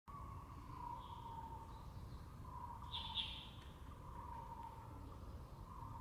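Grey wagtail giving two short, sharp, high call notes in quick succession about three seconds in, with a fainter high note near the start. Under the calls run a steady, slightly wavering whine and a low background rumble.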